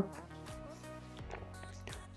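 Faint background music with a few soft sustained notes.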